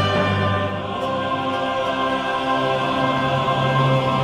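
French baroque choir and orchestra singing long held chords on the closing words 'in aeternum', moving through the final cadence.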